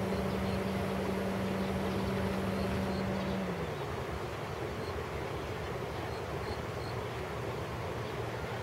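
A steady machine hum over a continuous rushing background noise; about three and a half seconds in, the hum slides down in pitch and stops, leaving the rushing noise.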